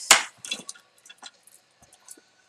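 A short sharp rustle or clack, then a few faint taps and clicks: small art supplies being handled on a work table.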